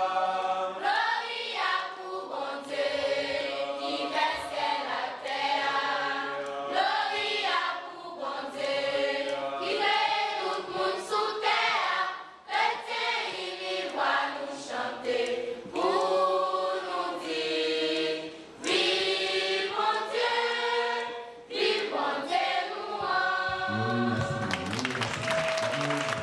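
Choir of girls and young women singing together in a church, sustained sung phrases separated by short breaks for breath.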